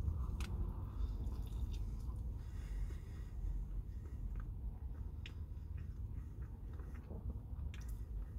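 A person biting into and chewing a marinara-soaked breaded chicken sandwich: soft, wet chewing with small scattered mouth clicks over a steady low hum.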